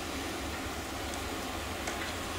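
Steady background hiss over a low rumble, with a faint click near the end.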